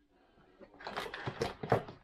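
A small plastic power adapter and its cable being handled and fumbled into a socket: a run of irregular plastic clicks and rattles starting about a second in.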